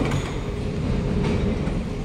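Kawasaki–CRRC Sifang C151A metro train standing at the platform with a steady low rumble, as its doors and the platform screen doors slide open.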